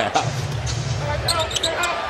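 Basketball being dribbled on a hardwood court, with steady arena crowd noise under it.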